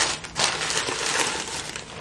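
White wrapping crinkling and rustling as it is pulled off a glass jar candle, in uneven handling crackles.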